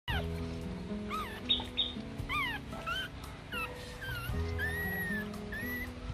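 Background music with held chords, over which a newborn Rottweiler puppy cries repeatedly in short, high squeaks that rise and fall in pitch.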